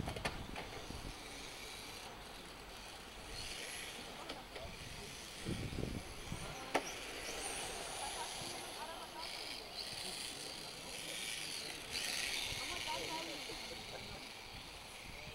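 Electric 1/10-scale RC touring cars running laps: a high-pitched whine from the motors and drivetrains that swells and fades as the cars pass, several times, with one rising whine about seven seconds in. There is a single sharp click about a second before that.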